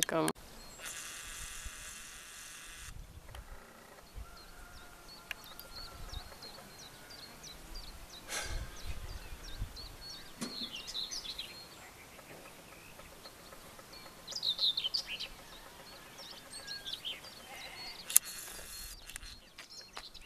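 Quiet outdoor ambience with small songbirds chirping in the background, the chirps busiest a few seconds before the end, and two brief bursts of hiss.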